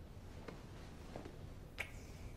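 Quiet room with three faint, short clicks; the sharpest comes near the end.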